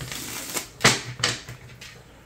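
Oracle cards and their cardboard box handled on a table: about four short, sharp taps and flicks of card, the loudest a little under a second in.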